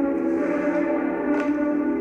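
Recorded music played back: the start of an unreleased song, with several sustained notes held steadily and no singing.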